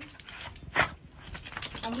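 A small dog moving about: one short, sharp, noisy sound a little under a second in, then a run of light, rapid clicks.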